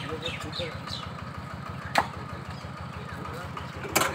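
A butcher's cleaver chops sharply onto a wooden block, once about halfway through and again at the end. Under it runs the steady low rumble of an idling engine.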